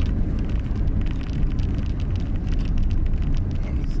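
Cabin noise of a car driving slowly: a steady low rumble of engine and tyres on the road.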